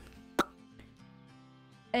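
Soft background music with held notes during a pause in speech, broken by one sharp click or pop about half a second in.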